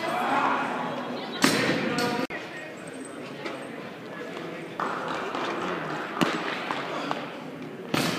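A loud crash with a brief ringing about a second and a half in, as a thrown hammer comes down, then a single sharp knock near six seconds during a second throw, with voices in the background of a large, echoing hall.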